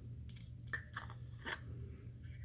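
Faint handling noise: a handful of light clicks and taps as small objects are picked up and moved by hand, over a low steady room hum.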